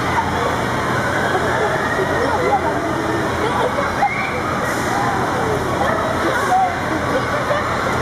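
Many children's voices shouting and chattering at once, a dense, continuous crowd babble with a steady low hum underneath.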